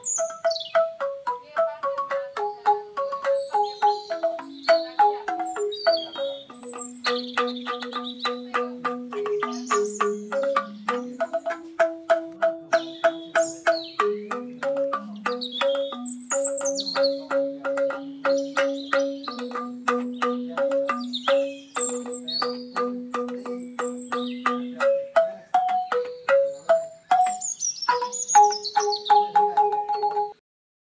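Banyuwangi angklung, a bamboo xylophone struck with mallets, playing a melody in fast repeated notes on each pitch. Birds chirp above the music.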